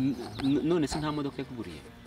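Soft, low-level speech in the first second and a half, with a bird calling in the background.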